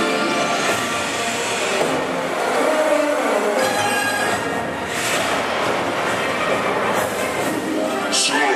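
Fountain show soundtrack played over outdoor loudspeakers: dramatic music mixed with sound effects, with a rising whoosh that tops out just after the start, over a steady rushing noise from the fountain jets.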